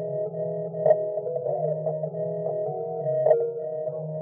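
Instrumental beat: sustained chords over a low, steady bass line, with no drums, and two brief louder accents about a second in and near the end.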